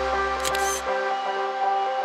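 Soft background music of sustained notes, with a single camera shutter click about half a second in. The deep bass notes drop out just before the one-second mark.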